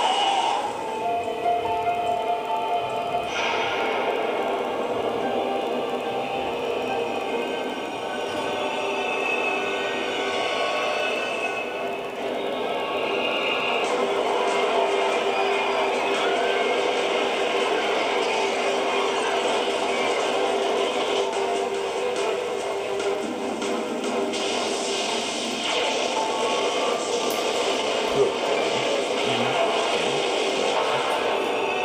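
Movie trailer music playing through a CRT television's speaker, with long sustained notes.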